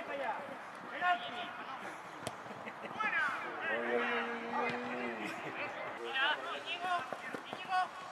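Shouting voices of players and spectators across an outdoor football pitch, with one long held call in the middle lasting over a second. A few sharp knocks of the ball being kicked come through between the calls.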